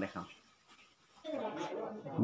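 A man speaking briefly, a pause of about a second, then talking again.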